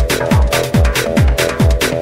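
Hard electronic techno/trance track: a deep kick drum that drops sharply in pitch on each hit, about four beats every two seconds, with hi-hat strikes between the kicks over a sustained synth chord.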